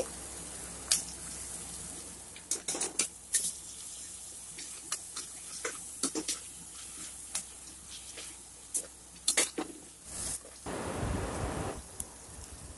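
Metal spatula scraping and clicking against an aluminium pressure cooker as onions, tomatoes and ginger garlic paste are stirred and sautéed in oil, over a faint sizzle. Near the end, a louder noisy stretch of about a second and a half.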